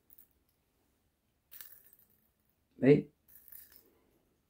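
Light metallic jingling of a fishing lure's treble hooks and fittings as it is handled, a brief jingle about a second and a half in and a few faint clinks near the end, with a short vocal sound between them.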